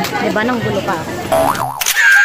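Voices and music for the first second or so, then a cartoon boing with a wobbling pitch, followed near the end by a bright whoosh sound effect as an intro jingle starts.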